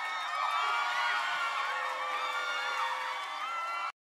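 A studio crowd cheering and screaming, many overlapping high-pitched voices, right after the song ends; the sound cuts off abruptly near the end.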